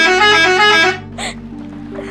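A bus's musical horn plays a quick stepping tune that stops about a second in. Background music continues underneath.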